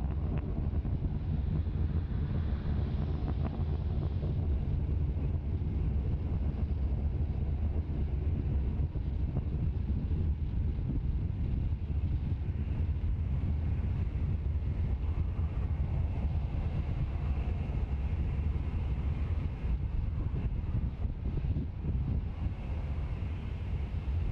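Falcon 9 first stage's nine Merlin engines heard from the ground during ascent as a steady, deep rumble.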